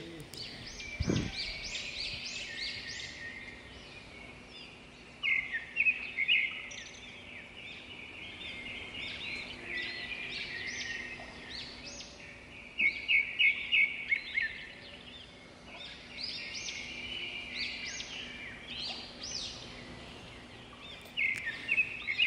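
Several songbirds chirping and calling, with louder runs of quick repeated notes about five seconds in and again around thirteen seconds in. A faint steady hum lies underneath.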